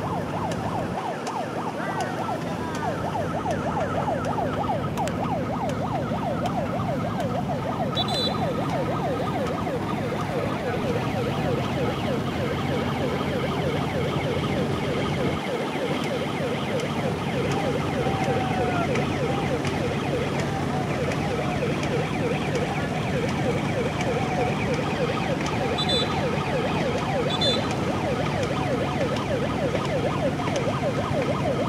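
Many voices shouting and cheering together from the racing boats and the banks, over a steady motorboat engine hum. Short high chirps are heard once about 8 s in and twice near the end.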